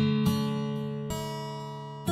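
Background film music of strummed guitar chords, each struck and left to ring and fade, with a new chord about every two seconds and lighter plucks in between.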